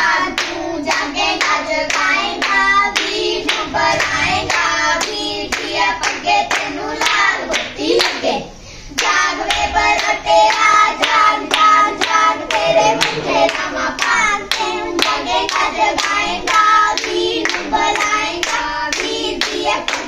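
Girls and women singing a Punjabi devotional aarti song together, clapping along in a steady rhythm of about two claps a second. There is a short break in the singing a little before halfway.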